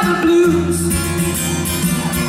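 Acoustic guitar strummed live, playing the song's accompaniment between sung lines.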